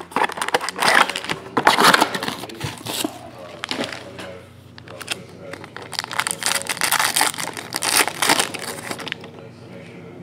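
A cardboard trading-card box is opened by hand and its plastic-wrapped pack is crinkled and torn open. It makes a run of irregular rustling and crackling that thins out about nine seconds in.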